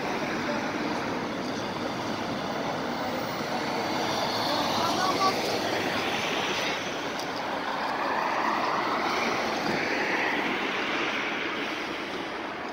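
Tatra tram pair rolling in and slowing to a halt at a stop, its electric traction whine gliding in pitch over steady street and traffic noise.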